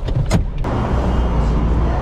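A low steady engine hum inside a Hyundai car's cabin. About half a second in, it gives way abruptly to a steady outdoor rush of street noise.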